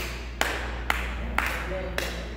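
Five slow, evenly spaced handclaps, about two a second.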